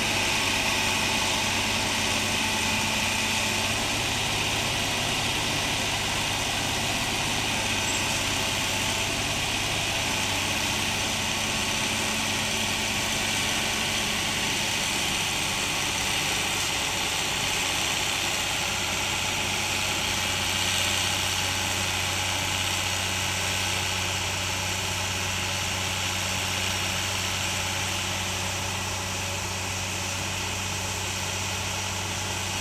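Diesel engine of a tracked excavator running steadily at low speed as the machine creeps down a steep dirt slope, a constant low hum with no sudden knocks or revving.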